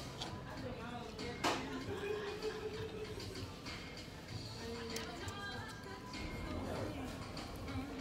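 Faint background music and room murmur, with a sharp utensil click about a second and a half in and a lighter one later, as a fork works butter over an ear of corn on the cob.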